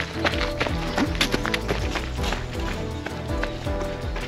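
Background music with a beat and sustained chords over a bass line.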